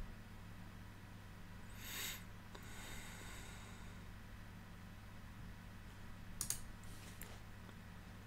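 Quiet room tone with a steady low hum, broken by a soft short hiss about two seconds in and a few faint sharp clicks a little after six seconds.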